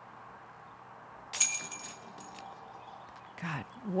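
Disc golf putt striking the chains of a metal basket about a second and a half in: a sudden metallic jingle with a high ringing shimmer that fades over about a second. It is the sound of a made putt.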